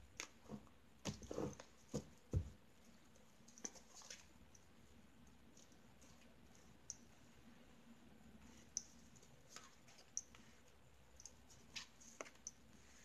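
Tarot cards being laid out on a surface by hand: a run of soft taps and card snaps in the first couple of seconds, then sparse faint clicks as cards are placed.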